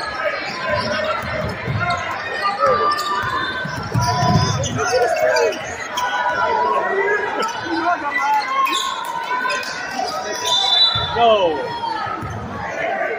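Basketball being dribbled on a hardwood gym floor, low thuds amid the talk and calls of spectators and players in the gym.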